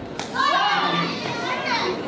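Ringside voices shouting and calling out during a kickboxing exchange, with a single sharp smack about a quarter of a second in.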